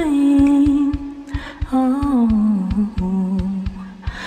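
A woman singing long held notes over a steady drum beat of about three beats a second, her voice sliding down in pitch about halfway through: a sung intro jingle.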